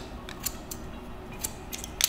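Haircutting shears snipping through curly hair: about half a dozen short, sharp snips at uneven intervals.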